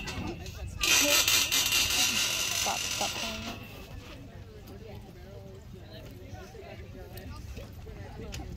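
Faint, distant voices talking, after a loud rush of noise that starts about a second in and dies away after a couple of seconds.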